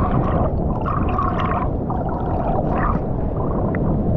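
Seawater sloshing and gurgling over a waterproof action camera at the surface, its microphone dipping in and out of the water: a dense low wash with a few short spells of bubbling.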